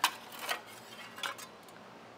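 A few light metallic clinks from metal parts or hand tools being handled. The first is the loudest, with others about half a second and just over a second in.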